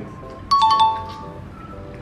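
A bright two-note chime, a higher note then a lower one like a doorbell ding-dong, sounds about half a second in and rings out for about half a second. Quiet background music runs under it.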